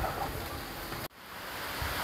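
Steady hiss of falling rain, dropping out abruptly about halfway through and building back up.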